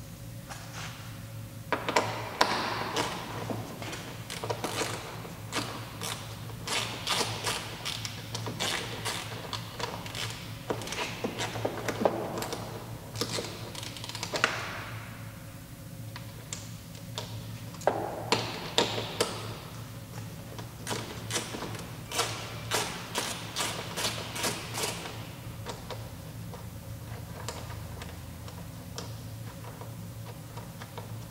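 Hand ratchet clicking in long runs of rapid ticks as a headlight mounting screw is backed out, one spell from about two seconds in and another from about eighteen seconds in, with small knocks of the tool between them.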